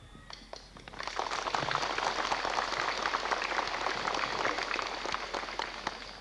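Outdoor crowd applauding: a dense patter of hand claps starts about a second in and tapers off near the end.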